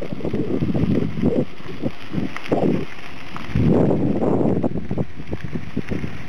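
Wind buffeting the microphone of a handheld camera carried on a moving bicycle, coming in uneven gusts, loudest about midway, with scattered small knocks and clicks from the camera being handled.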